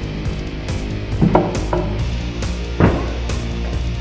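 Background rock music with a steady drum beat.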